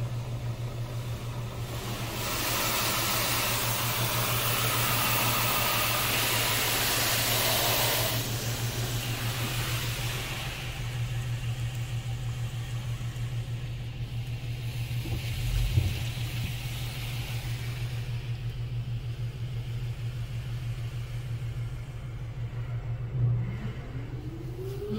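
Belanger Saber SL1 touchless car wash working over a car, heard from inside the car: a steady low hum throughout, with a louder rushing hiss from about two to eight seconds in that then tapers away.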